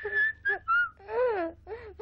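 Whistling: a quick run of short pitched notes, a clear high held note near the start, then lower notes that rise and fall.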